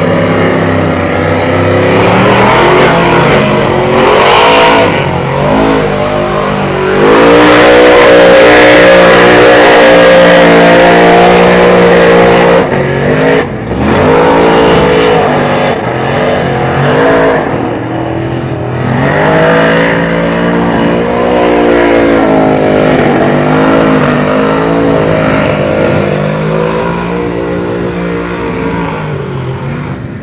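Lifted mud truck's engine revving hard at high rpm as it churns through a mud pit, its pitch rising and falling again and again. It is loudest about a quarter of the way in, dips briefly, then keeps revving.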